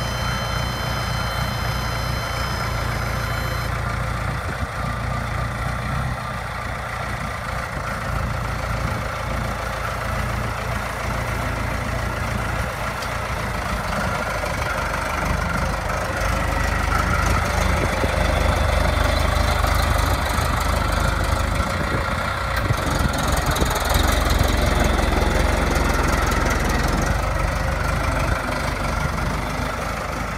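Diesel engine of a 1996 Case 1845C skid steer loader running as the machine drives and turns, with the engine louder through the second half. A high-pitched steady tone sounds for about the first four seconds, then stops.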